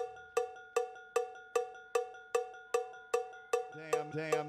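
Electronic dance track stripped down to a lone pitched percussion hit, repeating steadily about two and a half times a second. A synth bass line comes in near the end.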